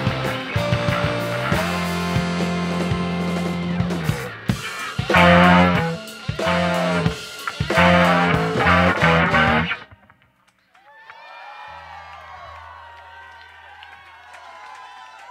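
A live band with two saxophones, distorted electric guitars, keyboard and drums plays the closing bars of a song: a few loud accented stabs, then the music cuts off suddenly about ten seconds in. A crowd then cheers and claps, quieter than the music, over a low held note from the stage.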